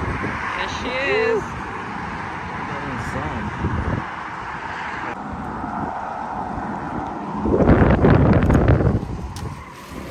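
Wind buffeting the microphone over a steady background of road traffic, with a short voice-like call about a second in. A loud rush of wind noise starts suddenly about seven and a half seconds in and lasts over a second.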